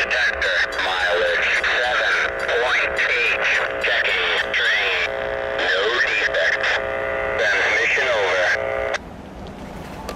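Voice transmission over a two-way radio heard through a scanner's speaker, tinny and narrow, cutting off suddenly about nine seconds in.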